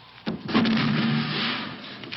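A sudden crash of something falling off-screen about a quarter second in. It is followed by about a second of noisy clatter, with a low held music chord underneath.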